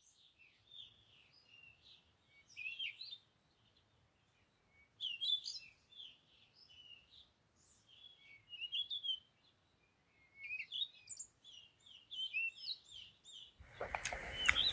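Songbirds chirping and twittering: scattered bursts of quick, high, warbling notes a few seconds apart, faint, over a quiet outdoor background.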